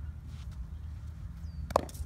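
Cricket bat striking a cricket ball once near the end, a single sharp crack as a cut shot is played.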